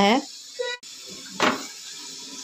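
A rolled, stuffed paratha being laid onto a hot tawa: one soft slap about one and a half seconds in, followed by a faint steady hiss.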